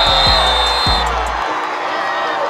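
Backing music with a heavy bass and a kick drum about every half second, which cuts off suddenly about one and a half seconds in, over stadium crowd noise. A referee's whistle sounds one steady blast during the first second.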